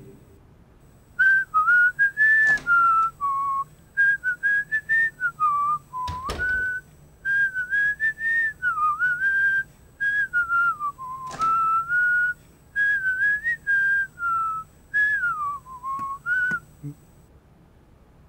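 A man whistling a wandering tune in short phrases, starting about a second in and stopping a little before the end, with a few knocks mixed in.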